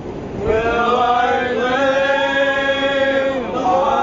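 A group of men and women singing a folk pub song together unaccompanied. After a short breath they hold one long chord for about three seconds, then start the next phrase.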